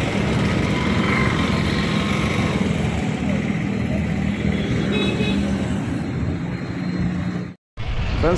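Steady outdoor street noise, traffic and engines running, with voices in the background; it cuts off suddenly near the end.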